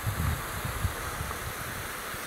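A small mountain stream running steadily over rocks, a constant rushing hiss. Wind buffets the microphone in the first half second, then eases.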